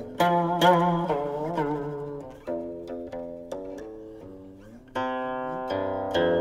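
Guqin (seven-string Chinese zither) played solo: plucked notes ring and die away. Some notes waver, and a few slide upward in pitch as the left hand glides along the string. A fresh, strong pluck comes near the end.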